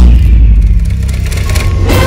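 Logo-animation sound effects: a sharp hit with a heavy low boom at the start, then a run of crackling, splintering noises over a deep rumble, and a second sharp whoosh-like hit near the end.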